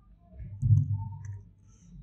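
Close-up mouth sounds of a person chewing a mouthful of egg fried rice with lips closed: low, muffled chewing swelling up about half a second in, with small wet clicks.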